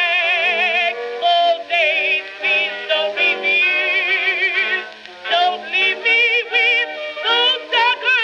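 A female contralto singing the blues with a strong vibrato over a small orchestra, from a 1922 acoustically recorded Okeh 78 rpm disc playing on a turntable. The sound is narrow, with no bass below about 200 Hz and no highs.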